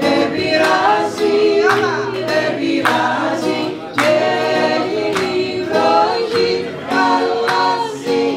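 Two women singing together over a strummed acoustic guitar.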